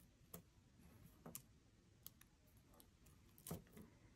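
Near silence with a few faint, scattered clicks of small citrine gemstone chips and beads being threaded onto thin wire.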